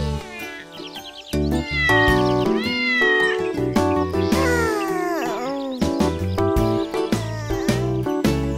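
A cartoon cat meowing twice, two long calls that bend in pitch, over children's song backing music.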